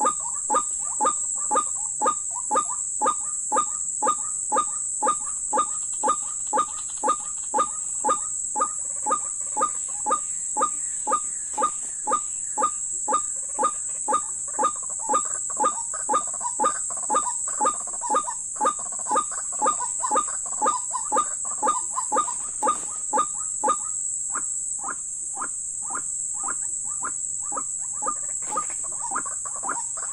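White-breasted waterhen calling: a monotonous, evenly repeated call at about two a second, turning fainter and quicker about six seconds before the end.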